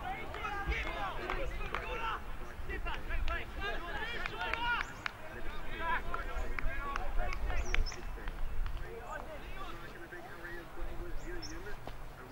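Indistinct voices calling and shouting, several at once and none close enough to make out words, over an uneven low rumble.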